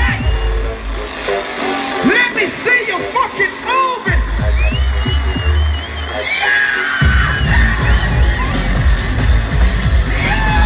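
Loud live electronic dance music through an arena PA, recorded from inside the crowd. The heavy bass cuts out about half a second in and slams back about four seconds in, drops out again about six seconds in and returns a second later. Crowd yells and whoops over it, most of them while the bass is out.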